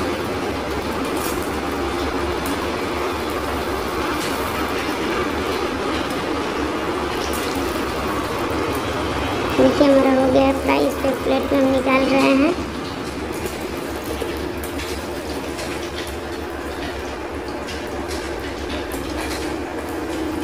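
Eggplant pieces sizzling in hot mustard oil in a steel kadhai, with occasional clicks of a slotted metal spatula against the pan. About ten seconds in, a louder held pitched sound, like a voice or hum, sounds for about three seconds.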